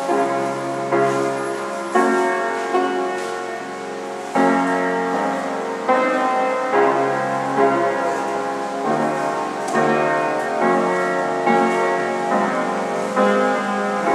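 Solo upright piano playing slow chords, a new chord struck about once a second and left to ring and fade.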